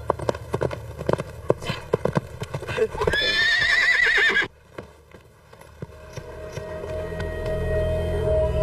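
Hoofbeats of a ridden horse, a quick irregular clatter for about three seconds, then a horse whinnies with a wavering call that cuts off abruptly about four and a half seconds in.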